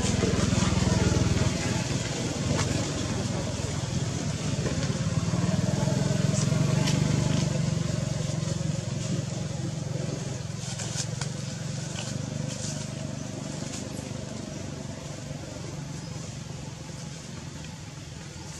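A low engine rumble, such as a vehicle passing, that swells about six seconds in and then slowly fades, with faint voices in the background.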